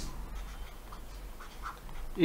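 A quiet pause: faint room tone with a steady low electrical hum, and two faint short ticks, one about halfway through and one near the end.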